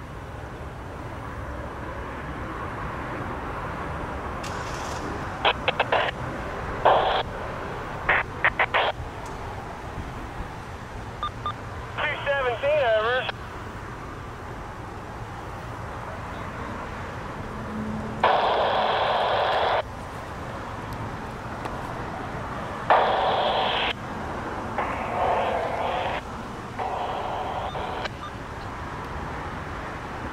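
Railroad scanner radio breaking in several times with short transmissions and squelch clicks, the thin, narrow-band sound starting and stopping abruptly, over a steady low background rumble.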